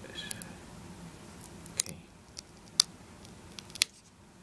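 Sharp plastic clicks and taps as fingers handle a laptop LCD panel, its display cable and the plastic bezel edge. The three loudest clicks come about a second apart in the second half. There is a brief high squeak near the start.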